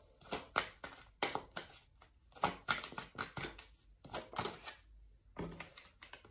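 Tarot cards being shuffled and handled on a table: a string of short, irregular card clicks and slaps, a few each second.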